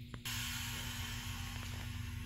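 Pneumatic engine-block leak tester letting out compressed air: a steady hiss that starts suddenly just after the beginning, over a steady machine hum.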